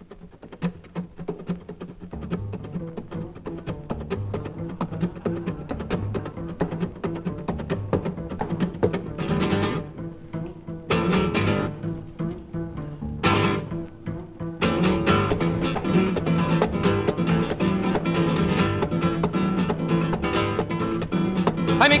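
Instrumental introduction to a porro-style Latin song on acoustic guitar. It starts quietly and builds, with brighter flourishes around the middle, then fuller, louder strumming from about fifteen seconds in. A singing voice enters right at the end.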